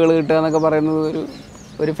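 A man's voice, speaking with long drawn-out vowel sounds held at a nearly steady pitch, then a short pause before speech resumes near the end.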